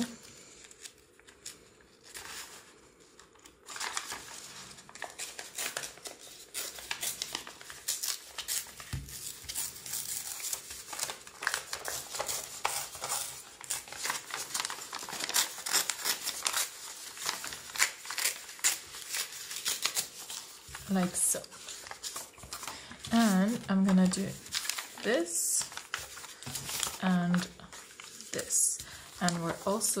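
Dyed graph-paper pages torn by hand and handled, a long run of crackling, rustling paper noise that starts about four seconds in after a quiet opening.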